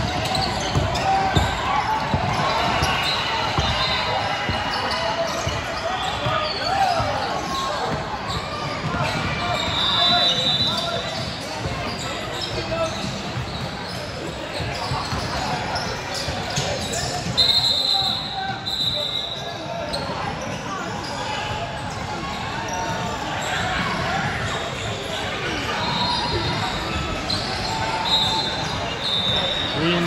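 Basketball game sounds in a large gym: a ball bouncing on the hardwood floor and short knocks of play, with players and spectators calling out, all echoing in the hall.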